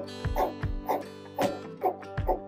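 Regular hammer strikes on wood, about two a second, over background music with steady tones and a bass beat.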